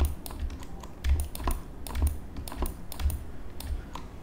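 Irregular clicking and tapping of computer keys and mouse at a desk, with soft low thumps in between.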